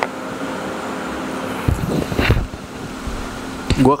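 Steady machine hum, like a fan or air-conditioning unit, holding a low steady tone. About two seconds in come a few low thumps and rustles: a handheld microphone being handled and picked up.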